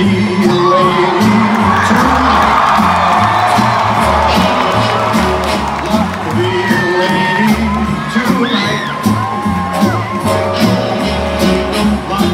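A live rock band plays an instrumental stretch through a concert PA, with a steady repeating bass beat, recorded on a phone from in the crowd. Crowd cheering swells over the first few seconds, and scattered whoops come later.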